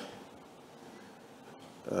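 Faint room tone in a pause in a man's speech: his drawn-out 'uh' stops at the start, and he starts speaking again near the end.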